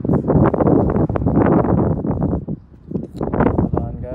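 Wind buffeting the phone's microphone: a loud, rough rumble with many small crackles, easing briefly about two and a half seconds in before picking up again.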